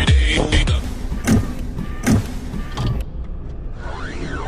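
A bass-heavy hip hop beat cuts off about a second in, giving way to animated-intro sound effects: mechanical whirring, like robot servos, with three sharp hits.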